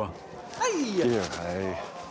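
People calling out excited greetings, with one long exclamation that jumps high and glides down in pitch.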